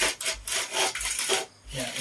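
Aluminium triangular plastering straightedge scraped across fresh cement render in about four short rasping strokes, shaving off the excess plaster to level the wall. Speech starts near the end.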